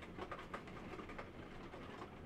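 Faint background noise with a few soft ticks in a pause between spoken lines, no speech.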